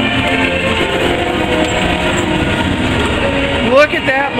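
Low rumble and clatter of a Peter Pan's Flight ride vehicle travelling along its overhead track, under the ride's soundtrack music. Near the end a short loud rising sound cuts through.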